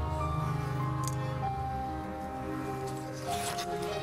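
Slow music for a figure skater's free-skate program, playing over the arena speakers, with long held notes that change slowly.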